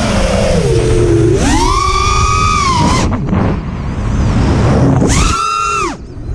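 An FPV racing quadcopter's brushless motors whine, the pitch sliding down at first, then rising sharply with two throttle punches: one held for about a second and a half, the other near the end and cut off suddenly. Constant wind rush on the onboard GoPro microphone runs underneath.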